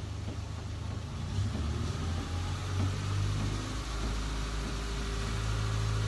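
Steady low mechanical hum, thickening a little from about a second and a half in.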